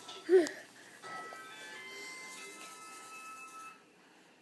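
A short, loud young child's vocal sound, rising then falling in pitch, about a third of a second in, followed by quieter television music made of held, steady tones that fades out near the end.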